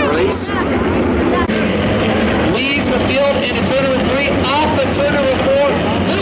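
Engines of a pack of USAC midget race cars running at a slow pace around the dirt oval, mixed with spectators talking close by.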